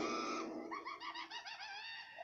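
A rapid run of short, high chirps, about seven a second, like a small bird calling, starting about half a second in as a trailing stretch of music fades out.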